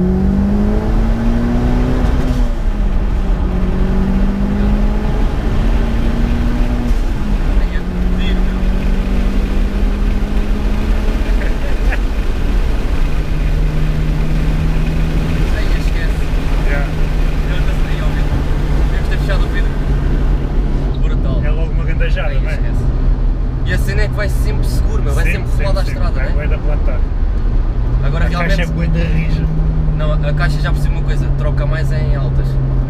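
Mitsubishi Lancer Evolution VIII's turbocharged four-cylinder engine heard from inside the cabin under hard acceleration. The revs climb and drop back at two upshifts in the first eight seconds, then settle to a steady cruise, rising slightly again near the end.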